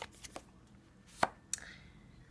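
A handful of sharp clicks and taps of tarot cards being handled and laid down on a cloth-covered table, the loudest a little past a second in.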